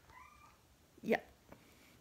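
Domestic cat giving a short, sharp meow about a second in, after a faint, softer meow just before.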